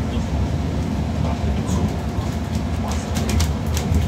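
Cabin noise aboard a moving Wright GB Kite Hydroliner hydrogen fuel-cell bus: a steady low rumble from the road and running gear. Sharp rattles and clicks from the body and fittings come in clusters, mostly in the second half.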